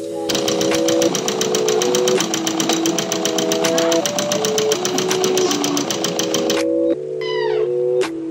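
Bajaj sewing machine stitching at speed, a rapid even clatter of needle strokes that stops near the end, over background music with a slow melody.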